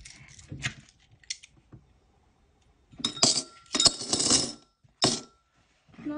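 Loose coins dropped by hand into a small glass jar, clinking against the glass and each other. A few light clicks come first, then about three seconds in a loud clatter of coins landing in the jar, and one more drop about a second later, with the glass ringing briefly.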